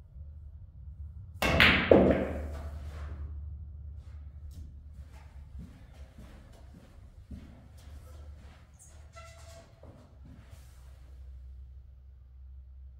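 A pool shot: two sharp, loud clacks about half a second apart, the cue striking the cue ball and then the cue ball hitting an object ball, with a brief ring after. Fainter scattered knocks and clicks of balls and footsteps follow.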